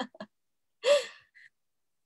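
A woman's short breathy laugh: the tail of a laugh at the start, then one gasp-like laughing breath about a second in.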